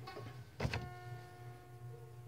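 Acoustic guitar softly closing a piece: a sharp pluck about half a second in, after which the notes ring on and slowly fade.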